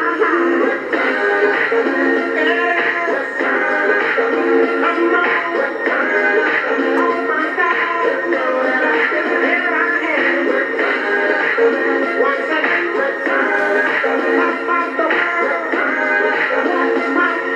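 Pop song with singing playing through the small speaker of a vintage Panasonic flip-clock radio, sounding thin with little bass.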